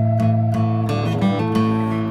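Guitars strumming steady chords under one long held sung note that ends about a second in, after which only the guitar strumming goes on.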